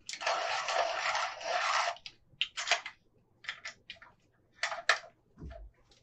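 A coloured pencil being sharpened: a continuous scraping for about two seconds, then a few short scrapes.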